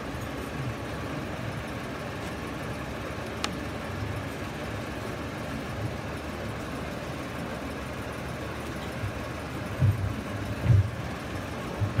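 Steady background noise of a large open-sided shed holding a quiet congregation, with a single sharp click about three and a half seconds in and a few dull bumps near the end.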